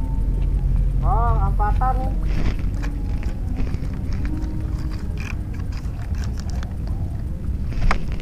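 Steady low wind rumble on the microphone over open water, with a short wavering pitched sound about a second in.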